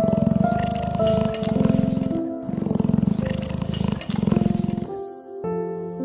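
Leopard's rasping call, a series of about six coarse grunts roughly one a second, with gentle music underneath.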